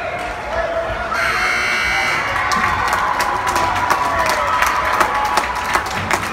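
Ice rink's electronic buzzer sounds one steady, harsh tone for about a second. Spectators then cheer and clap.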